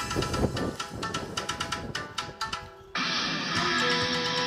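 Recorded yosakoi dance music played over a loudspeaker. It thins out and dips in level, then a louder section cuts in suddenly about three seconds in.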